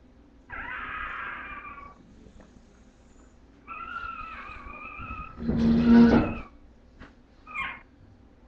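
Bulldog puppies whining and crying in high, drawn-out calls, with a louder, lower cry about six seconds in and a short squeak near the end.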